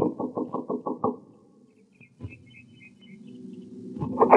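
Radio-drama sound effect of knocking on a door: a quick run of raps in the first second. After a pause comes a single click and a faint squeak as the door is opened.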